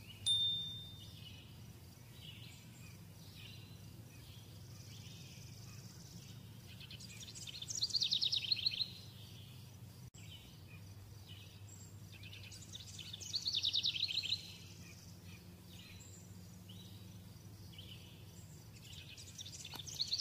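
A bird sings a short, fast, falling trill over and over, about every six seconds, over a steady low hum. Between the songs come faint soft strokes of a marker pen on paper.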